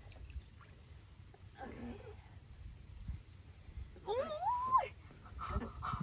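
A woman's brief high squeal, rising in pitch about four seconds in, as she sinks into ice-cold water. The rest is quiet.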